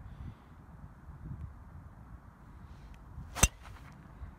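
Golf driver striking a teed ball on a tee shot: a single sharp crack about three and a half seconds in.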